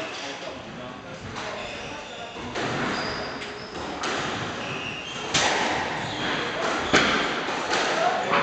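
Squash ball being struck by racquets and hitting the court walls in a rally: a series of sharp knocks about one to one and a half seconds apart, the loudest two in the second half.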